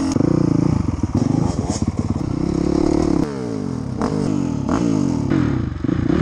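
Enduro dirt bike engine running and blipping, heard from a helmet camera, with some mechanical clatter. The engine note rises and falls repeatedly in the second half.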